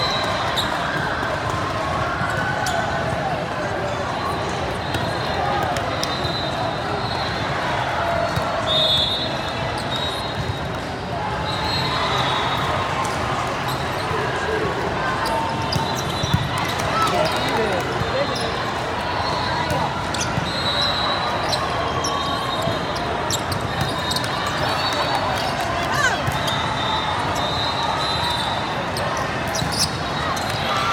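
Busy indoor volleyball-hall din: a steady wash of many voices, with frequent sharp slaps of volleyballs being hit and bouncing off the courts throughout.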